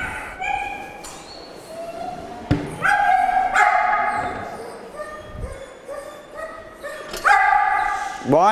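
A dog barking and yelping several times, some calls drawn out to about a second, with a sharp thump about two and a half seconds in.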